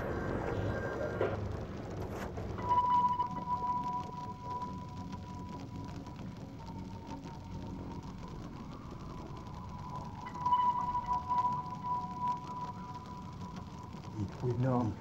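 Ambient electronic soundtrack: a steady, high, held tone enters about three seconds in and sustains over a low, murky background, swelling a little near the end.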